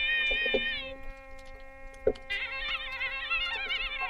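Nadaswaram playing a Carnatic melody in raga Sankarabharanam over a steady drone. A held note ends about a second in, leaving only the drone and a single sharp stroke near the middle. The reed then returns with a fast phrase of quickly wavering, ornamented notes.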